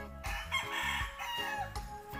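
A rooster crowing once, starting about a third of a second in and lasting just over a second, with a falling end, over background music with a steady beat.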